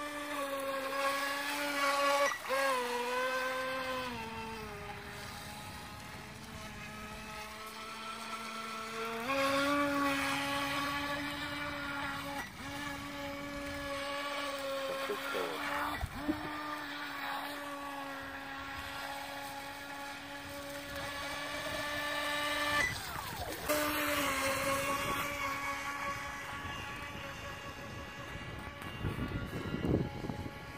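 Feilun FT012 RC racing boat's brushless motor whining at speed. The pitch drops about four seconds in, holds lower for about five seconds as the throttle eases, then climbs back up and runs steady, with a brief dip about three-quarters of the way through.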